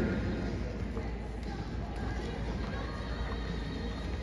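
Large indoor arena ambience: a steady low hum with faint background music, the announcer's voice echoing away at the start.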